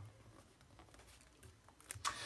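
Faint scratching of a pen writing on paper, with a short click near the end.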